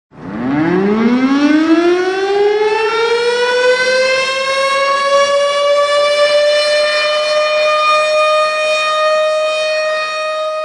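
A siren winding up: a single wail that rises steeply in pitch over the first few seconds, then levels off and holds steady.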